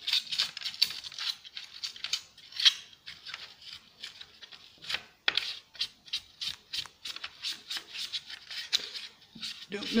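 A sponge scrubbing hard and fast inside an old Black & Decker belt sander's opened housing, in quick, uneven scratchy strokes, wiping out caked sawdust.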